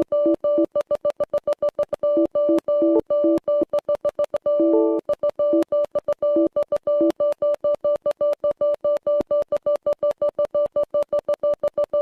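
Synthesized electronic tone stuttering in rapid on-off pulses, several a second, at one steady pitch, with a lower note cutting in now and then.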